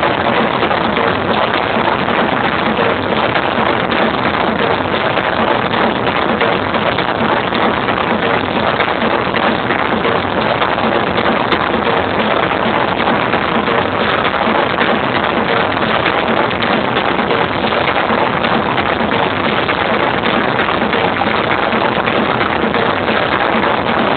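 Loud electronic dance music and crowd in a large arena, picked up by a camera microphone as a steady, dense, distorted roar with no clear beat.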